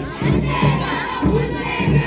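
Crowd of marching women and girls shouting slogans together, many voices overlapping.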